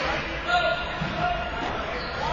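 Players' voices shouting during ball hockey play, with a knock from stick, ball or boards about half a second in.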